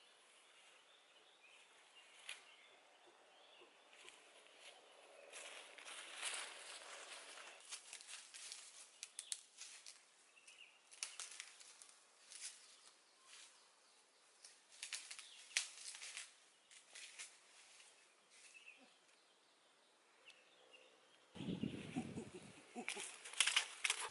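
Irregular crackling and rustling of footsteps through dry leaves, stalks and undergrowth, with a louder, deeper rustle near the end.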